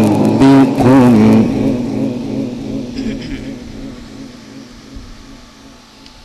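A sheikh's melodic Quran recitation, a long drawn-out chanted phrase that breaks off about a second and a half in, after which the sound fades away gradually.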